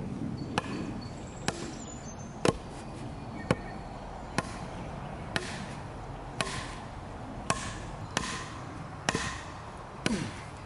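A wooden log batoned against the spine of a Ka-Bar Becker BK2 knife, driving its thick carbon-steel blade into the side of a tree stump: about ten sharp knocks, roughly one a second.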